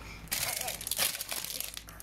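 Plastic packaging crinkling and rustling as it is handled, in one continuous stretch that starts about a third of a second in and stops just before the end.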